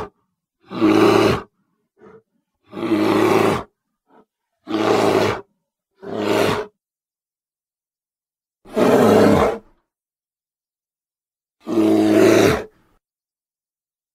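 Grizzly bear roaring and growling in a series of separate short roars, about six, each lasting under a second, with silent gaps between them.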